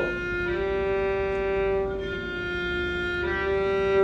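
Violin playing a long held note with straight, even bow strokes. The tone changes slightly at each bow change, about half a second in, around two seconds, and again near the end.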